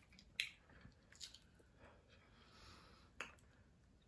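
Near silence with faint eating noises: about three short mouth clicks and smacks from chewing seafood, the loudest about half a second in.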